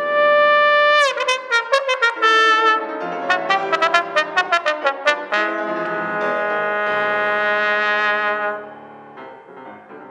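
Alto trombone playing a long held high note, then a quick string of short, separate notes, then another long sustained note that stops about a second and a half before the end. A piano accompanies underneath and is left on its own after the trombone stops.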